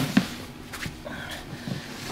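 Handling noise from plastic reptile tubs being moved on a table: a few faint, light knocks and rustles.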